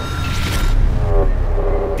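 Off-road trophy truck's engine running hard as the truck approaches at speed, a deep rumble with an engine note that falls in pitch partway through.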